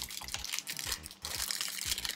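Clear plastic wrapper on a pack of mechanical pencils crinkling and crackling irregularly as it is handled.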